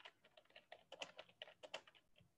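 Faint typing on a computer keyboard, a quick irregular run of key clicks, picked up by a video-call microphone.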